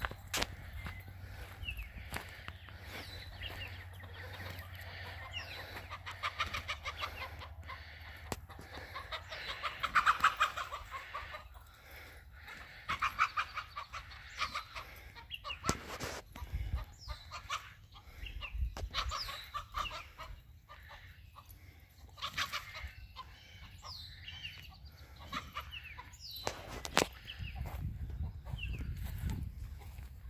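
Chickens clucking in scattered bursts as a puppy runs among them, the loudest burst about ten seconds in.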